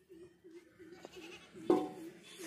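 A young goat bleats once, briefly, near the end.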